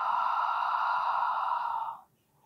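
A woman's long, steady exhale, a breathy rush of air that stops near the end. It is the Pilates breath out on the effort of a pelvic curl.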